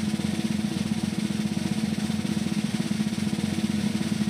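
A fast, unbroken snare drum roll at a steady level: a suspense roll played under the reveal of whether a fight bonus is awarded.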